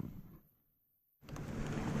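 Wind rushing on the microphone over open water fades out into a dead gap of total silence, just under a second long, where the audio drops out at an edit cut. The wind noise then returns.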